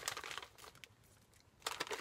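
A plastic candy bag crinkling as a hand rummages in it for a wrapped candy: a few crinkles at the start, a quieter stretch, then louder crinkling near the end.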